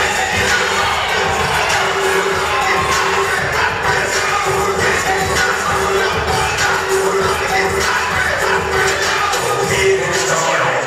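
Audience cheering and shouting loudly over music, steady throughout.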